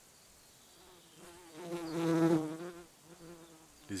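A flying insect buzzing past, its hum swelling to loudest about two seconds in and fading away, then a fainter buzz returning briefly near the end.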